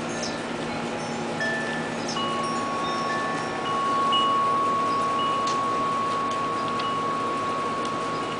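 Wind chimes ringing: clear, steady tones at several different pitches, one of which starts about two seconds in and keeps ringing.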